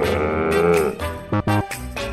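A drawn-out growl voiced for a toy dinosaur, about a second long, followed by a few quick clicks, over light background music.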